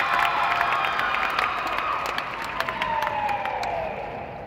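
Audience cheering and clapping, with scattered claps and long held whoops; one long whoop falls in pitch near the end as the cheering dies down.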